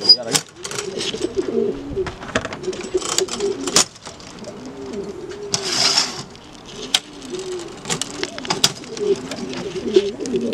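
Domestic pigeons in a loft cooing again and again, low rising-and-falling calls. Sharp metallic clicks from the cages' wire doors break in, the loudest right at the start, with a brief rustle about six seconds in.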